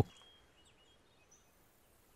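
Faint outdoor ambience with a few small birds chirping: scattered short, high chirps over low background hiss.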